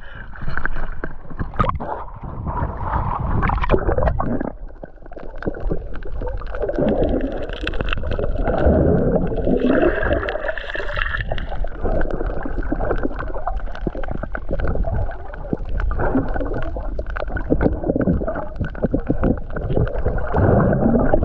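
Water splashing and sloshing against an action camera held at the surface while swimming. About four seconds in, the sound turns muffled as the camera goes under, and the rest is underwater gurgling and crackling of moving water and bubbles.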